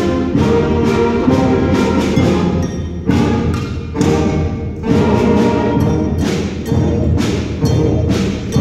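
School concert band playing: brass and woodwinds holding chords over a steady percussion beat that hits about twice a second.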